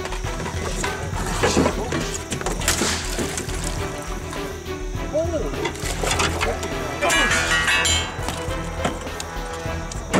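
Background music over the thrashing and splashing of a large alligator fighting in the water beside a boat, with sharp knocks and brief shouted voices.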